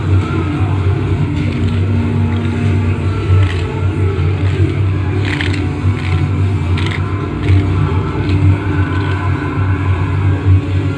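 Television audio playing in the background, with music in it, running steadily throughout.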